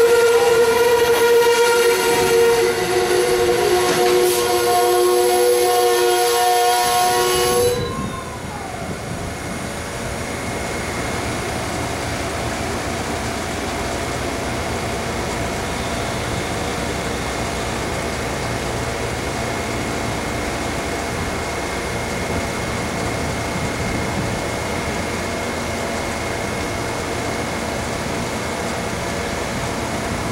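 A passenger train's multi-note horn sounds a long blast that cuts off about eight seconds in. After that comes the steady rolling noise of Amtrak Northeast Regional stainless-steel passenger cars passing close by.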